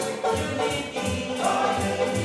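A group of male voices singing together in harmony to strummed acoustic guitars and ukulele, with a tea-chest bass plucking low notes underneath, in the style of a string band. The strumming keeps an even pulse of about four strokes a second.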